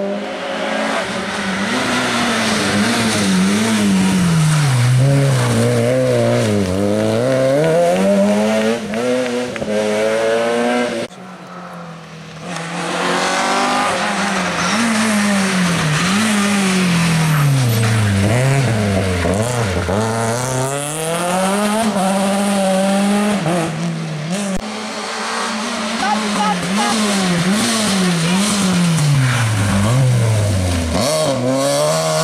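Small rally cars' petrol engines, among them a Citroën C2 and a Fiat Panda, revving hard and dropping back as they change gear, brake and accelerate through the bends of a tarmac stage. The engine pitch rises and falls over and over. A brief lull about eleven seconds in separates one car's run from the next.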